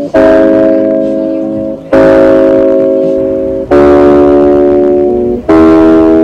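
Background music: guitar chords, a new one struck about every two seconds, four in all. Each chord rings on and slowly fades before the next.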